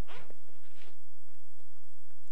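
A zipper on a black Bible cover being pulled open, a few faint scratchy strokes over a steady low electrical hum.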